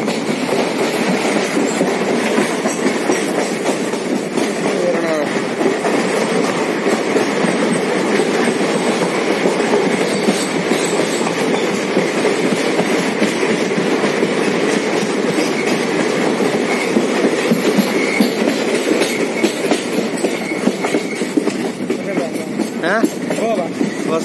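Amaravati Express passenger train running through a rock tunnel, heard from the carriage: a loud, steady running noise of wheels and carriages on the track, closed in by the tunnel walls.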